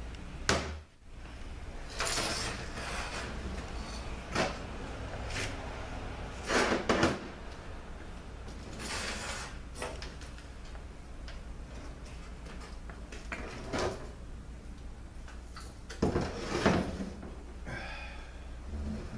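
Scattered knocks, clunks and short scraping slides of a GM 4T45E automatic transmission's aluminium case being turned and handled on a workbench while its oil pan is unbolted and lifted off.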